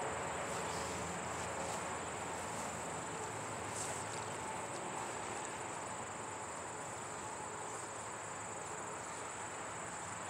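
Steady high-pitched trill of insects over a constant background hiss.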